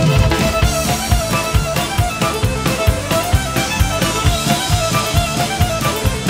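Drum kit and electric violin playing a fast instrumental fiddle break: steady kick and snare hits under quick runs of violin notes.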